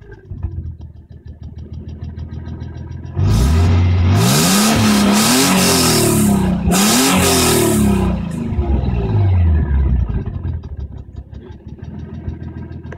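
Nissan 300ZX (Z32) 3.0-litre V6 idling, then revved hard in neutral about three seconds in. It is held up high, to around 5,000 rpm, with a couple of dips for about five seconds, then the revs fall back to a steady idle.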